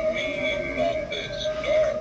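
Halloween ghost animatronic playing its spooky music, with held, wavering notes.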